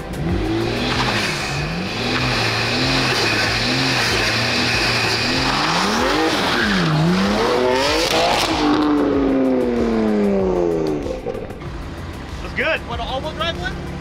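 BMW M twin-turbo straight-six engines revving up and down several times, then one car accelerating hard with a quick shift, its engine note falling away as it drives off. A steady idle and voices follow near the end.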